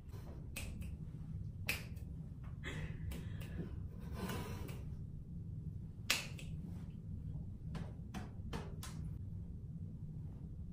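Finger snaps: one loud, sharp snap about six seconds in, with several softer snaps or clicks scattered before and after it. Stifled, breathy laughter around the middle, over a low steady hum.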